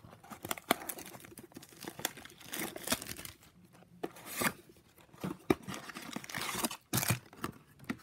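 Tearing and crinkling as a glued-shut cardboard trading-card box is prised open and the foil booster packs inside are handled. Irregular rustles and rips come in short bursts, the sharpest about halfway through and near the end.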